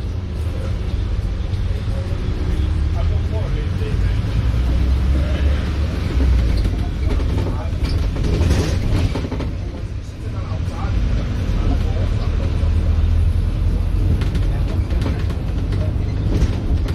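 Cabin noise of a Volvo B5LH hybrid double-decker bus on the move: a steady low rumble of drivetrain and road, with indistinct voices in the background.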